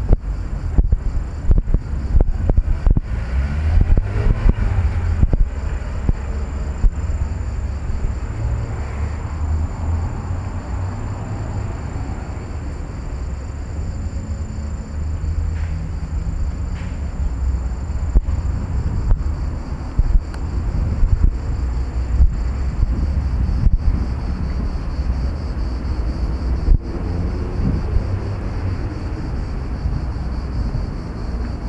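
Wind buffeting a handheld camera's microphone outdoors: a gusting low rumble with short knocks throughout, heaviest in the first six seconds.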